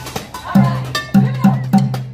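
Drumsticks beating a rhythm on metal pots, pans and stove bodies, about three to four hits a second, some hits ringing like a cowbell, over regular deep thumps.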